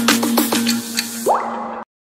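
Intro music sting: a held low note under a quick run of short notes that bend down in pitch, with a rising sweep just after a second in. It cuts off suddenly near the end, leaving silence.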